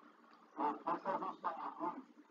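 A remote participant's voice coming faintly through the video-call audio: about a second and a half of short, clipped syllables, thin and lacking bass.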